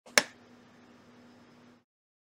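A single sharp click about a fifth of a second in, a metal hobby knife being set down on a plastic cutting mat, followed by a faint steady hum.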